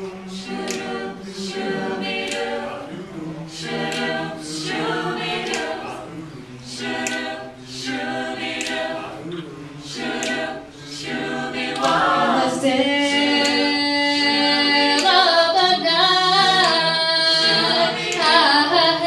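Mixed male and female a cappella vocal group singing, with backing voices on short syllables in a steady pulse. About twelve seconds in, the voices grow louder and hold sustained chords.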